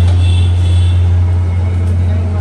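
A loud, steady low hum, with a few faint high tones that fade out about a second in.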